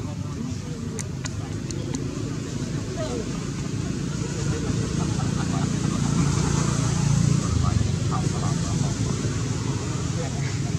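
Indistinct voices of people talking in the background over a steady low rumble like distant traffic, with a few sharp clicks about a second in.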